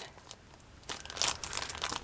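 Small clear plastic zip-lock bag of beads being handled, the thin plastic crinkling in irregular bursts that begin about a second in.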